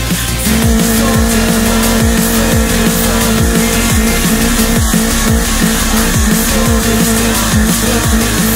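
Fiat Seicento's small four-cylinder engine held at high, steady revs as the car churns through deep mud, the pitch wavering slightly in the second half. Electronic music with a regular kick drum plays over it.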